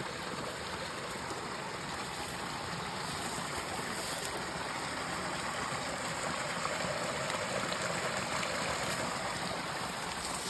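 Small rocky creek running steadily, a continuous rush of water, while a soft plastic water-filter reservoir is held in the current to fill.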